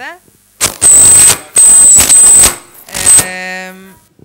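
Loud, harsh bursts of distorted noise with a high whistle in them, over the hall's sound system, three of them, then a short steady buzzing tone near the end.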